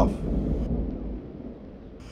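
Wind buffeting the microphone outdoors: a low rumble that dies away a little past a second in, leaving a faint hiss.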